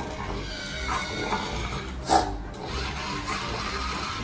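A puppy barking once, loud and short, about two seconds in, with a few fainter yaps before it, over background music.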